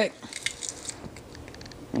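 Garlic being crushed in a hand-held metal garlic press: soft squishing with small clicks and crackles.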